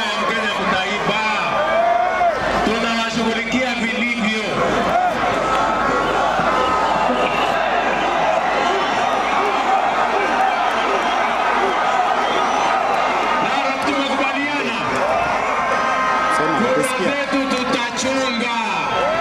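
A man making a speech over a public-address system to a large outdoor crowd, with crowd noise under his words that thickens through the middle stretch.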